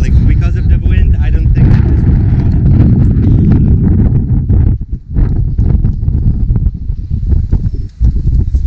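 Strong wind buffeting the camera microphone: a loud, low rumble that drops away briefly about five seconds in and again near the end.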